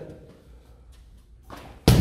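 A jokgu ball struck hard by a high kick: one sharp smack near the end.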